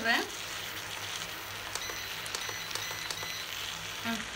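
Chicken semi-gravy sizzling in a pan as it cooks down, a steady soft hiss with faint light crackles.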